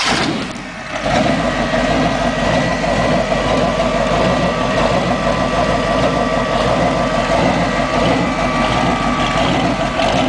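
The small-block V8 engine of a Hossfly motorised bar stool, with 327 on its chrome valve cover, running at a steady idle from about a second in.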